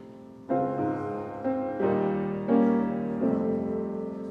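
Piano playing the service prelude: chords struck about every half second to second, each ringing and fading before the next.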